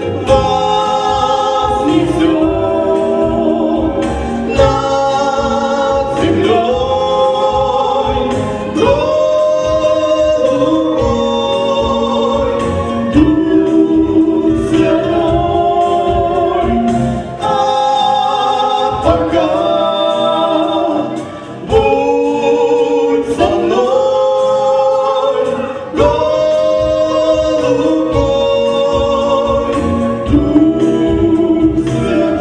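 A man and a woman singing a Russian Christian song as a duet over instrumental accompaniment, holding long notes that slide from one pitch to the next.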